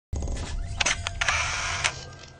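Camera-shutter sound effect for a logo intro: several sharp shutter clicks over a low swell of noise, starting suddenly, with the loudest click near the end.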